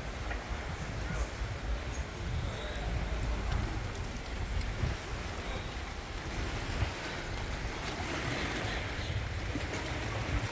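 Wind buffeting the microphone in uneven low gusts, over the steady wash of choppy water lapping against a rocky shore.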